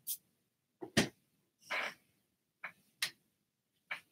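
A quiet pause holding a few faint, sharp clicks and one short breathy hiss near the middle.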